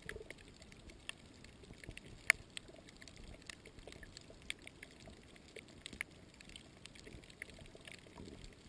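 Faint underwater ambience heard through a submerged camera over a shallow coral reef: a low water hiss with irregular sharp clicks and crackles scattered throughout, the loudest click a little over two seconds in.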